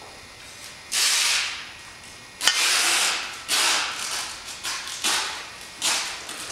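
Handling noise: about five short scraping rustles, each under a second, as the grass catcher's parts are moved about and the hand-held camera is shifted.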